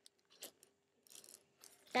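A page of plastic card sleeves in a ring binder being turned: a few faint crinkles and clicks, the sharpest about half a second in.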